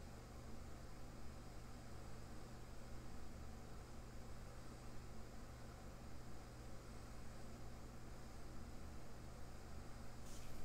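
Faint steady background hiss with a low, even hum: room tone.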